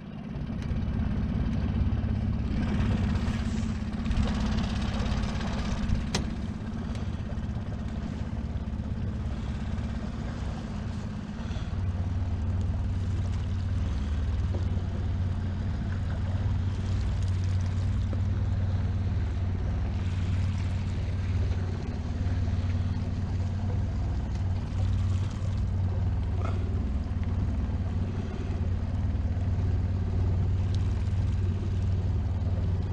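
Small open boat's outboard motor running steadily with a low hum, which grows a little stronger about eleven seconds in.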